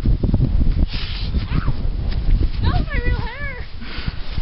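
A short, high, wavering vocal call near the end, over a low, uneven rumbling noise.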